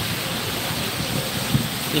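Steady hiss of rain and car tyres on a wet city street, with a brief thump about one and a half seconds in.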